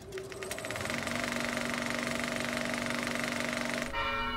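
Logo sound effect: a fast, even mechanical rattle with a steady low hum under it, cutting off suddenly near the end as a bell strikes.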